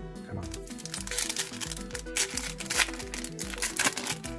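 Foil trading-card pack crinkling and crackling as it is torn open by hand, with background music underneath.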